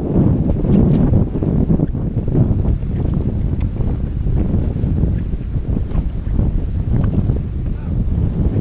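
Wind buffeting the microphone: a loud, gusting low rumble throughout.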